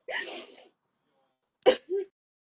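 A woman crying: a breathy sob at the start, then a sharp, short sob with a brief voiced catch near the end.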